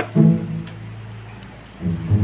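A sharp click, then a single low plucked-string note that dies away quickly over a steady low hum.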